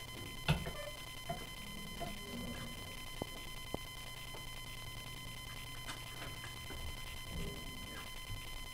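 Quiet classroom room tone with a steady electrical hum and faint high whine, a knock about half a second in and two small clicks a few seconds later.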